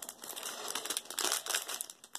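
Foil wrapper of a Match Attax trading-card pack crinkling as it is torn open and handled, stopping just before the end.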